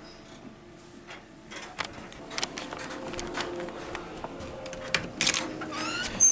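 Scattered clicks and knocks of handling, then the latch and frame of an aluminium storm door rattling near the end as a hand grips it to open the door.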